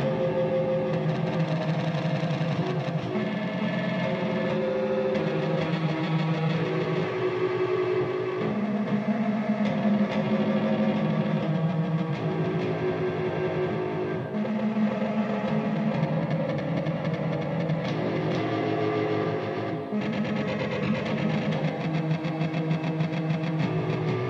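Instrumental music built from a sampled, effects-processed detuned electric guitar: dense sustained chords that change every second or two, with no drums.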